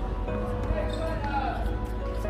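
A tennis ball bouncing on a hard court, with voices in the background.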